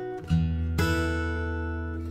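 Background music on acoustic guitar: plucked notes and chords ringing out, with a new low note struck about a third of a second in and another chord shortly after.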